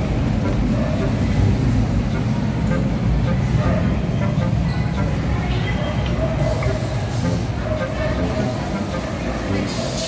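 Steady low rumble of road traffic and station ambience, with faint voices of people around.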